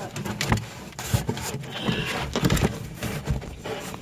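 Cardboard box being opened by hand, heard from inside the box: a run of irregular tearing, scraping and rustling as the flaps are pulled apart.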